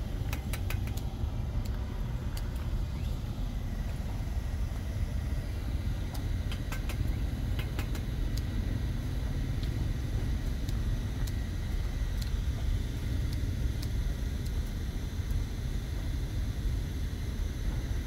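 Sharp, scattered clicks of hand pruning shears snipping shoots on a podocarpus bonsai, over a steady low rumble.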